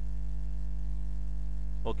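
Steady electrical mains hum on the recording, with a low buzz and its overtones and no change through the pause. The narrator starts to say "okay" at the very end.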